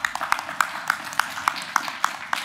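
Applause from a small group of people clapping their hands, with sharp individual claps standing out over the general patter.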